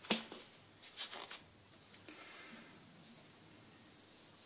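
A sharp click at the start, then a few short, soft handling sounds about a second in, from nitrile-gloved hands handling the chuck and olive-wood workpiece on the stopped lathe; otherwise faint room tone.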